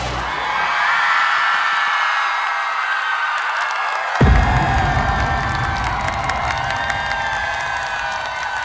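Concert crowd screaming and cheering as a song finishes, the fans' high held screams over the fading band. A single deep thump lands about four seconds in, followed by a low rumble.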